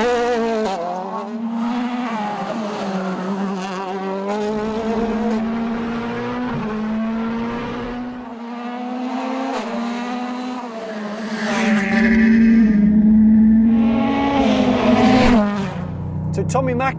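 Rally car engine revving hard on a stage, its pitch climbing and dropping repeatedly through gear changes, loudest about three-quarters of the way through.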